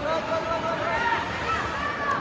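Spectators talking and calling out over a general crowd babble, several voices at once.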